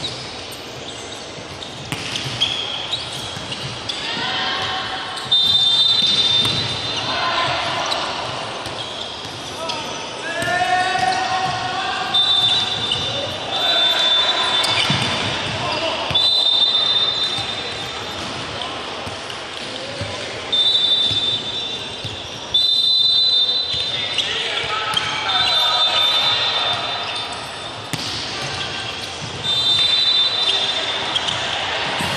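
Indoor volleyball game in a large, echoing gym: players shouting and calling to each other, with ball hits on the floor and hands. Several short, high, steady tones cut in, about six times over the half-minute.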